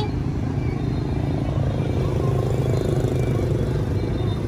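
Steady low rumble of nearby road traffic, engines running.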